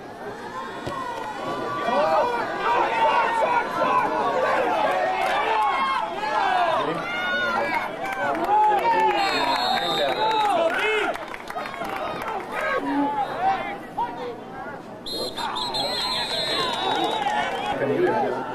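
Football crowd in the stands shouting and calling out, many voices overlapping with no single clear speaker. Twice a steady high-pitched tone sounds above the voices.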